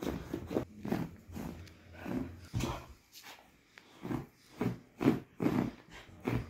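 Golden retriever puppy sniffing at a bedsheet: a run of short, irregular sniffs, with a lull about three seconds in before they pick up again.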